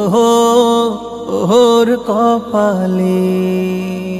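A male singer's voice singing a Bengali Islamic folk gojol, with ornamented lines that bend up and down and settle into one long held note near the end.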